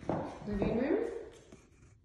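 A footstep on a hardwood floor as the person filming walks, followed by a drawn-out spoken "you".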